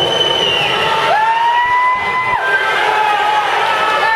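Spectators at an indoor pool yelling and cheering on swimmers in a race. Many voices overlap, and a long high held cry stands out about a second in, lasting over a second.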